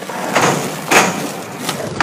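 Skateboard wheels rolling on concrete, with a loud clack of the board about a second in and lighter knocks near the end.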